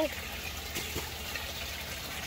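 Water running steadily through an aquaponics radial flow settling tank, an even trickle and splash of the inflow.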